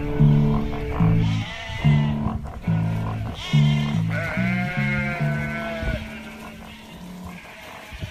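Closing bars of guitar-and-bass song accompaniment with sheep bleating over it: a short bleat about a second and a half in, then a longer one. The music stops about six seconds in.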